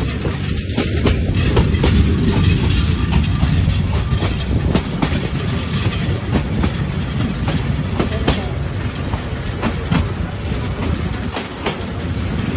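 Train running on the track, heard from an open carriage doorway: a steady loud rumble of the wheels on the rails, with irregular sharp clacks as the wheels cross rail joints.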